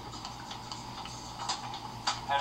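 A few faint, scattered clicks over a steady background hum and hiss.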